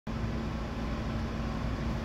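Steady low hum and rumble inside a car cabin, with a faint constant tone and no sudden sounds.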